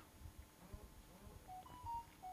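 Near silence, then a few faint short electronic beeps at two pitches, one lower and one higher, in the second half.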